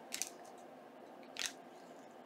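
Two faint, brief rustles of paper and lace netting being handled, one just after the start and one near the middle, as a lace cluster is pressed down by hand into hot glue; otherwise quiet.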